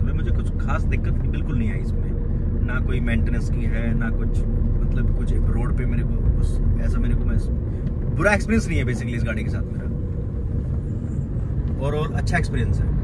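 Steady low engine and road rumble inside the cabin of a Maruti Suzuki Ciaz diesel driving at speed, with bits of low talk over it.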